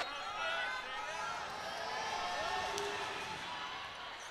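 Crowd noise in an indoor arena: many overlapping voices calling and chattering at once, with no single voice standing out.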